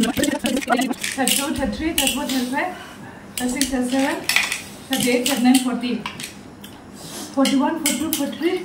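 Empty snail shells clicking against one another and against ceramic plates as they are picked through and counted by hand: many light, irregular clinks.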